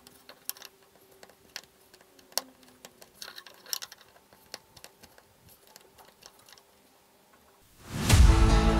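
Steel bezel pusher clicking and scraping against a silver crown bezel as the stone is set, a string of faint, irregular small clicks and ticks. Acoustic guitar music comes in loudly at the very end.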